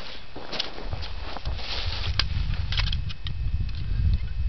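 Wind rumbling on the microphone outdoors, with scattered light clicks and crunches like footsteps or handling on rough ground.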